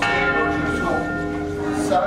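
Church bells ringing, several tones sounding at once and holding steady.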